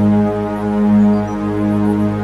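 Meditation drone music: a deep, steady sustained tone tuned to 207.36 Hz (G sharp), rich in overtones, with a tone an octave lower beneath it, swelling and easing gently in level.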